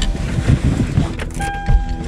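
Someone climbing into a pickup truck's passenger seat: irregular thumps and knocks of body and gear against the seat and door frame, with clothing rustle. A steady tone sounds near the end.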